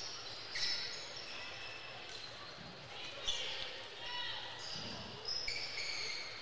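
Basketball game sound on a gym floor: sneakers squeaking on the hardwood in many short high squeaks, a ball being dribbled, and voices murmuring in the hall.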